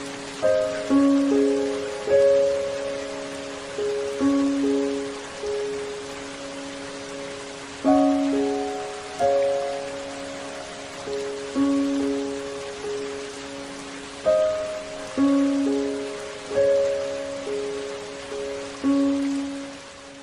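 Soft, slow instrumental background music: single notes struck every second or so, each ringing and fading, over a steady hiss.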